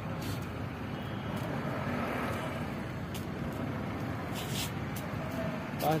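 Steady background rumble of distant traffic. A person starts speaking right at the end.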